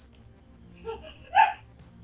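Low room noise with one short vocal sound from a person about one and a half seconds in.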